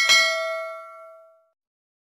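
A notification-bell sound effect: a single bell ding, struck once and ringing with several tones that fade away within about a second and a half.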